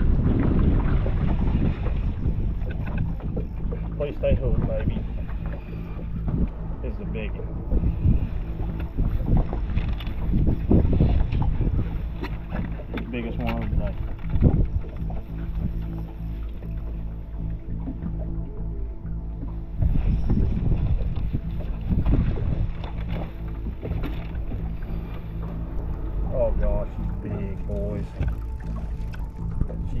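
Wind buffeting the microphone on a bass boat's front deck over a steady low hum, with scattered short knocks and rustles as a bass is fought on a bent rod.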